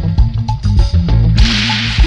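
Roots reggae dub instrumental: a heavy bass line and drum kit, with a sudden hissing wash of noise that breaks in about one and a half seconds in and hangs on.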